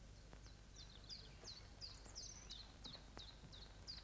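Near silence with a faint bird chirping: a run of short, high notes that each drop in pitch, about three a second.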